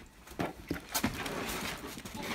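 Plastic packaging rustling and crinkling inside a cardboard shipping box as items are moved, with a few light knocks in the first second.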